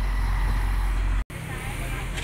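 Outdoor market ambience: a loud, steady low rumble with voices. The sound cuts out for an instant just over a second in, then carries on a little quieter.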